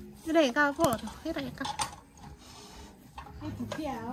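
A woman's voice, talking without clear words, with a couple of short clinks about a second in.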